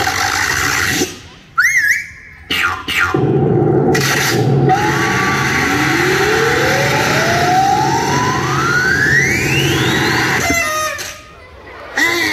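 Played-back cartoon-style sound effects for a mime act: a short warbling tone about a second and a half in, then a long, smooth rising glide in pitch from low to very high over a noisy background, with abrupt cuts between the pieces.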